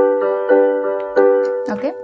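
Piano-voice chords played on an electronic keyboard, struck three times, each ringing and fading away.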